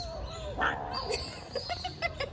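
Tiny kitten making a thin, wavering vocal sound as it eats, followed by a run of small clicks from chewing.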